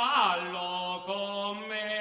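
Unaccompanied male folk singing of a traditional Italian narrative ballad. The voice slides down in pitch at the start, then holds a long, steady note.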